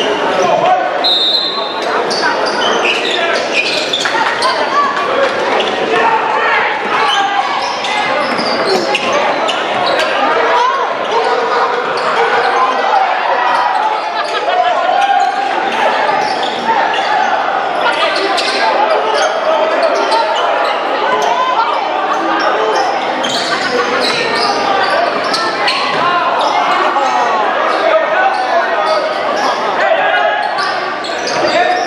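Gym ambience at a basketball game: many spectators' voices talking and calling out at once in a large hall, with a basketball bouncing on the hardwood floor.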